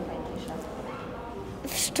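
Speech only: faint voices of children in a room, then near the end a girl begins a word with a short hissing 'sz' sound.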